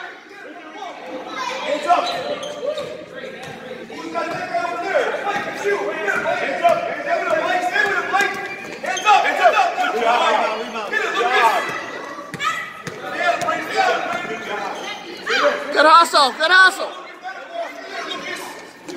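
A basketball bouncing on a gym court amid many overlapping voices talking and calling out, echoing in a large gymnasium, with a louder burst of shouting near the end.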